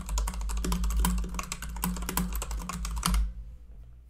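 Fast typing on a computer keyboard, a quick run of key clicks that stops about three seconds in.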